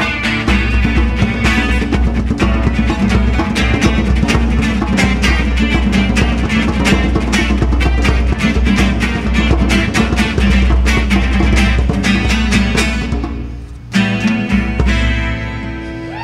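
Instrumental music: a strummed acoustic guitar with two djembes played by hand in quick, busy rhythms. About two seconds from the end the playing drops away briefly, then one strummed chord comes in sharply and is left ringing as the piece ends.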